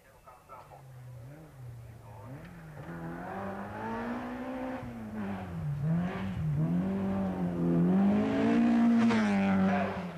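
Rally car engine on a gravel stage, revving hard with its pitch climbing and dropping repeatedly as the driver accelerates and lifts. It grows steadily louder as the car approaches, loudest near the end.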